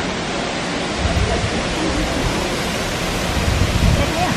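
Steady rushing of a jungle waterfall pouring into its rock pool, with irregular low rumbles of wind on the microphone.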